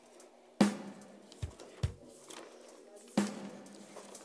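Two sharp knocks with a ringing tail, one about half a second in and one near the end, with two short, dull, deep thumps between them.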